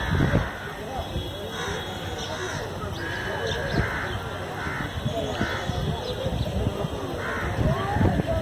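Birds cawing, a harsh call repeating every second or so, one drawn out a little longer midway, over people talking in the background.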